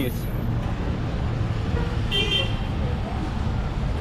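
City street traffic passing close by: a steady rumble of engines. A brief high-pitched horn toot comes about two seconds in.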